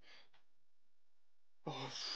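Near silence, then about a second and a half in a man lets out a loud voiced sigh of relief.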